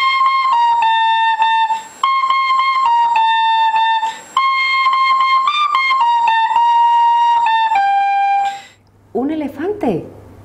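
An intro melody of held notes on a high, flute-like wind instrument, in a few short phrases, stopping about a second before a woman's voice comes in.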